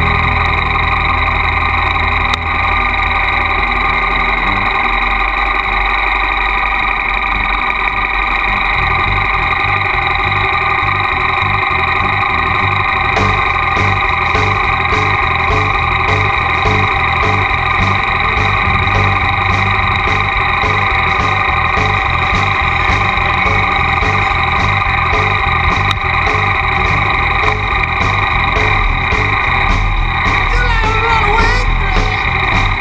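Triumph motorcycle engine idling steadily, with a regular low pulsing from about nine seconds in.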